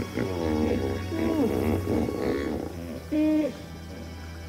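Hippopotamuses calling in the water: a run of pitched calls that rise and fall, then a short, loud call held at one pitch about three seconds in.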